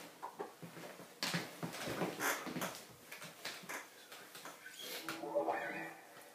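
Faint rustling and knocking as a person sits down and picks up an electric guitar, with a short pitched, wavering sound near the end.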